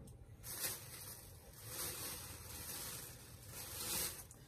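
Fabric rustling as a cotton T-shirt is handled and folded, rising and falling in a few swells.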